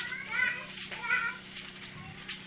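Two short, high-pitched vocal sounds about a second apart, each bending in pitch, over a faint steady hum.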